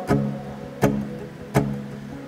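Two acoustic guitars playing an instrumental gap between sung lines: three strummed chords about three quarters of a second apart, each left to ring.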